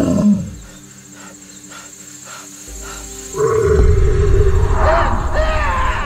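A loud, deep, rough growling roar from an unidentified source. It comes in about three and a half seconds in, after a quieter stretch, and runs on with some higher wavering cries over it.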